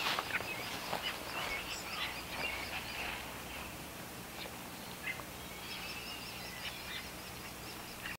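Songbirds chirping and trilling over a faint, steady outdoor background, with a repeating high trill in the second half.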